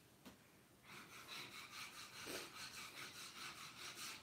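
Inkjet-printed freezer paper rubbed hard against a poplar board to burnish the print into the wood, in faint, quick back-and-forth rasping strokes starting about a second in.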